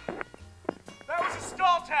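Two drawn-out, wavering vocal calls, the second louder, over background music with a steady bass line.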